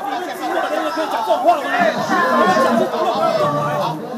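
Several men arguing at once with police officers, their raised voices overlapping; one man retorts to a policeman over the others.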